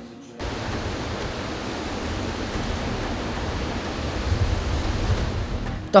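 A river in flood: the steady rushing roar of fast, churning water with a deep rumble underneath. It cuts in suddenly about half a second in.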